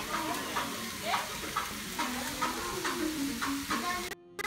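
Meat sizzling on a grill, a steady hiss broken by frequent small crackling pops.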